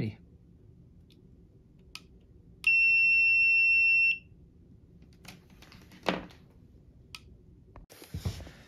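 Continuity beeper of a GVDA 168B clamp meter: one steady high-pitched beep, about a second and a half long, sounds about three seconds in while the test probes bridge a wire. The beep signals good continuity through the wire.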